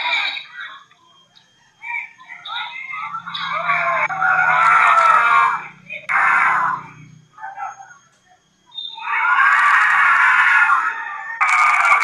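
High-pitched shouting and screaming from several voices at once, coming in loud bursts of a few seconds with brief lulls between them, like basketball spectators yelling during play.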